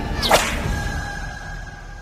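A short, sharp swish sound effect about a third of a second in, over held dramatic background music tones that fade away.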